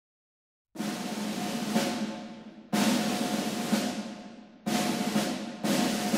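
Music opening with drum rolls after a moment of silence. The rolls come in phrases that each start suddenly and fade, about every two seconds, with the last two coming closer together.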